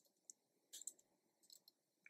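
Faint keystroke clicks from a computer keyboard being typed on, a handful of separate taps spread unevenly over two seconds.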